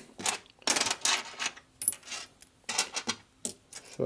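Loose steel bolts and washers clinking and rattling against each other as a hand sorts through a pile of them, a run of irregular light clinks.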